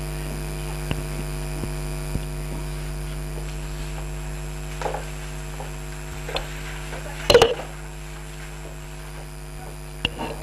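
Steady electrical mains hum, with a few faint clicks and one brief louder noise about seven seconds in.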